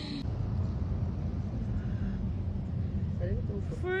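Steady low rumbling outdoor noise, with a short vocal sound near the end.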